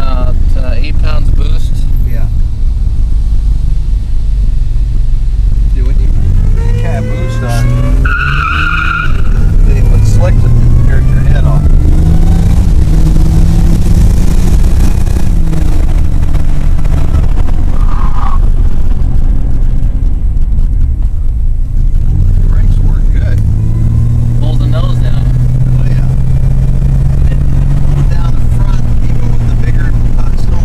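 Turbocharged 3.8 L Buick V6 heard from inside the cabin, pulling hard through the gears, its pitch climbing and dropping several times. A short high squeal sounds about eight seconds in.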